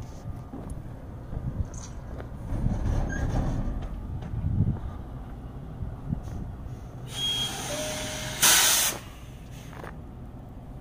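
Low rumbling truck-yard background, then a short, loud hiss of compressed air about eight and a half seconds in, like a truck's air brakes venting.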